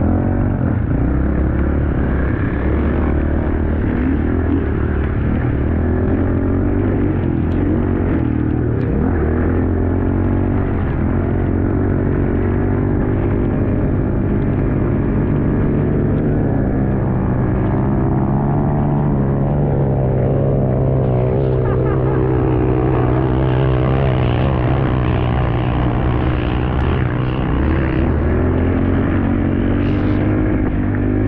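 Dirt bike engine running close up while riding, a continuous loud drone whose pitch rises and falls with the throttle, wavering most in the middle stretch.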